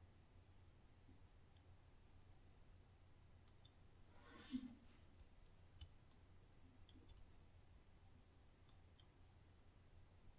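Near silence broken by a few faint, sharp computer mouse clicks, with one brief soft noise about halfway through.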